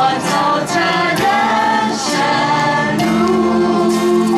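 A group of women singing a gospel song together through microphones, holding long notes over light musical accompaniment.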